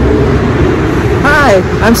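Steady, loud low rumble of road traffic with a vehicle engine running nearby. A woman starts talking about a second and a half in.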